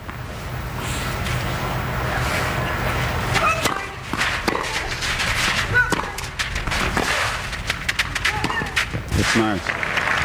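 Tennis ball struck by rackets and bouncing on court during a rally: a string of sharp pops from a few seconds in, over a steady crowd and court ambience.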